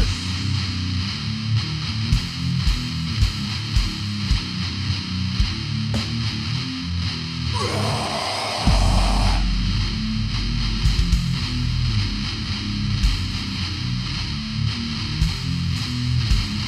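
Slamming brutal death metal played on downtuned electric guitars, bass and drums, with no vocals. It changes from a fast passage into a slower, heavy groove with spaced drum hits. A short noisy swell comes about halfway through, and a deep low rumble starts just after it.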